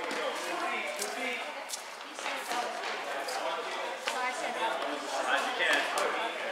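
Players' voices chattering in an echoing gym, with a few sharp slaps of volleyballs being hit or bouncing on the floor.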